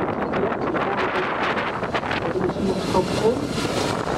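Wind rushing on the microphone, heard together with the passing rush of a TT Zero electric race motorcycle as it comes close at speed.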